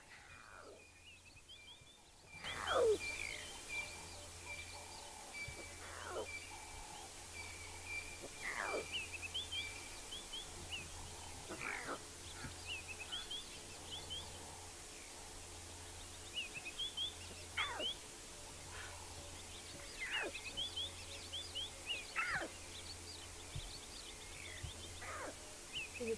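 Newborn lion cub calling for its mother, a short high cry falling in pitch about every two to three seconds, with small bird chirps behind it.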